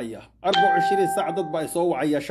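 A man speaking, with a steady bell-like ringing tone that starts suddenly about half a second in and holds for over a second under his voice.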